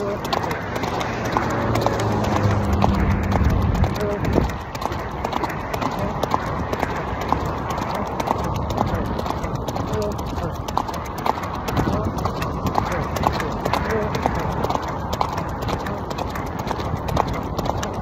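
Hoofbeats of an Arabian horse being ridden at speed on sand, a steady run of regular strikes. Wind rushes on the microphone under them.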